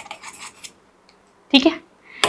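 Chalk writing on a chalkboard: a few short, faint scratchy strokes in the first half-second as a word is finished.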